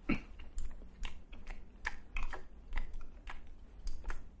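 Toothbrush scrubbing teeth in a foam-filled mouth: short, wet, clicking scrapes of the bristles, two or three a second at an uneven pace.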